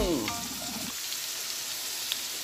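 Chopped onions and garlic sizzling steadily in hot olive oil in a wok, the onions just tipped into the pan.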